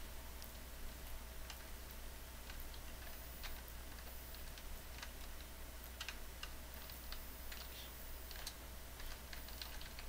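Computer keyboard keys clicking in a scattered, irregular run of light taps, over a steady low hum.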